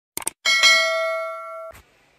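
Subscribe-button animation sound effect: a quick double mouse click, then a bright bell ding that rings and fades for about a second before cutting off, with one more soft click at the end.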